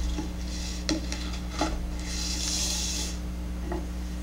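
A small cardboard box and its paper leaflets being handled and slid on a tabletop: a few light knocks, and a rustling slide in the middle.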